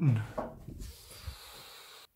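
A man's voice speaking briefly, then a faint steady hiss that cuts off abruptly at the end.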